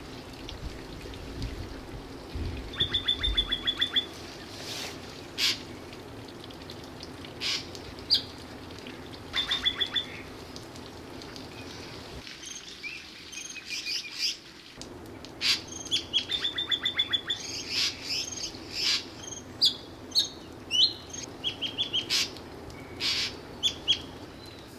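Wild birds singing and calling: a rapid high trill comes three times, about three seconds, ten seconds and sixteen seconds in, among many short chirps and whistled notes over a steady low background. About halfway through the background briefly drops out.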